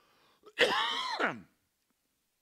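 A man clearing his throat once, about half a second in, lasting about a second with a falling pitch. He suspects dust breathed in while weed eating has irritated his throat.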